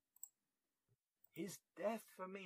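A pause in a man's speech: near silence with one faint click shortly in, then his voice resumes in the second half.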